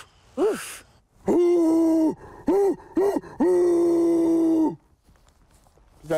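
A person imitating a bear's roar with their voice: a loud, long held call, two short ones, then another long one, all on a steady pitch.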